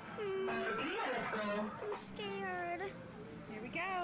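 A young girl's voice making long, wordless sliding notes, rising and falling, several times.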